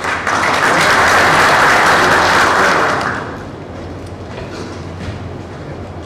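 Audience applauding, loud for about three seconds and then dying away.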